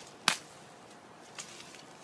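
A G10 knife slashing into plastic-wrapped pork: one short, sharp smack about a quarter second in, then a faint tick about a second later.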